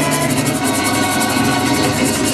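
A live Puerto Rican folk ensemble playing: strummed guitars and cuatro over hand drums and conga, keeping a steady beat.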